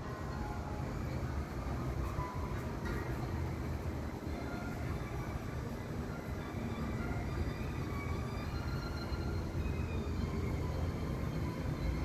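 A steady low rumble with a hiss, and faint music in the background.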